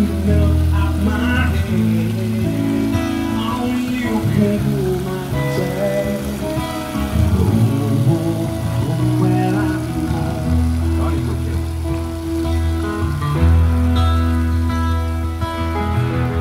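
Live music: a singer over guitar and steady bass notes, with water running over a grate underneath.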